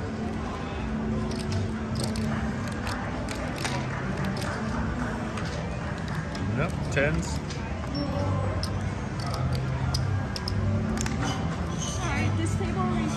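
Casino floor ambience: background music with held bass notes and indistinct voices, with scattered light clicks of playing cards and casino chips being handled on the felt table.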